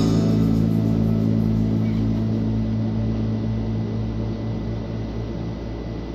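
Electric bass guitar through a combo amp, a last low note left to ring out with its pitch steady, slowly dying away, with a slow throb in the low end.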